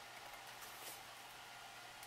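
Near silence: faint room tone, with one slight soft sound just under a second in.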